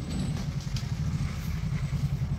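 Diesel engine idling steadily, with an even low pulse.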